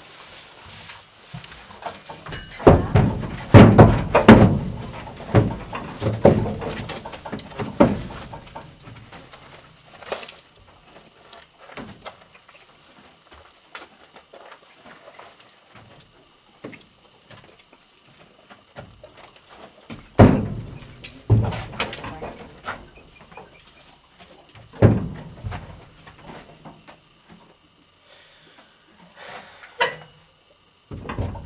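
Horse's hooves thudding and knocking on the floor of a horse trailer in irregular clusters of steps, a heavy run of them from about three to eight seconds in and another around twenty seconds in, as the mare shifts and steps in and out.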